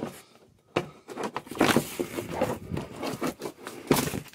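Irregular scraping, rubbing and rustling with light knocks, starting about a second in, as something is worked loose by hand on a car's bare metal floor pan.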